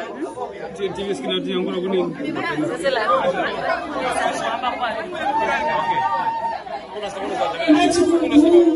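Many people talking at once: overlapping crowd chatter, with no single voice standing out.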